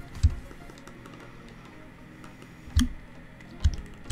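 Computer keyboard keys clicking: three separate key presses spaced out over a faint steady background.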